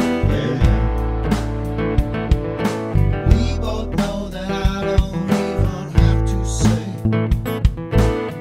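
An acoustic guitar song with a steady beat and a sung vocal line.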